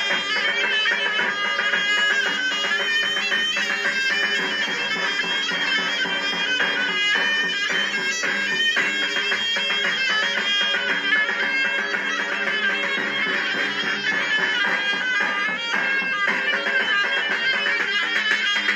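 Zurna playing a fast, reedy Anatolian dance tune (oyun havası) over steady beats of a large davul drum.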